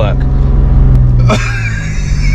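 A 2007 Citroen C1's one-litre three-cylinder petrol engine running under way, heard inside the small cabin as a steady low drone.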